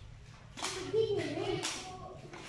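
Three short, sharp slaps about half a second apart, with a brief voice between them.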